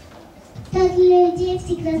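A young child singing into a handheld microphone, coming in about two-thirds of a second in with long held notes after a near-quiet start.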